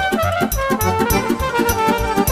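Live Romanian folk dance music from a wedding band: a wind-instrument melody over a fast, even beat.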